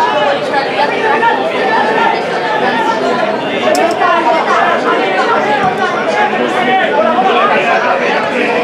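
Many people talking at once close by: a steady chatter of overlapping voices with no single speaker standing out.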